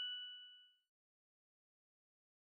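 The ringing tail of a single bright chime sound effect, two clear pitches fading out within the first second, then dead silence.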